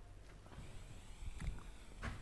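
Faint low thumps and a few sharp clicks, the loudest knock about a second and a half in, as a lecturer moves along a chalkboard and sets chalk to the board.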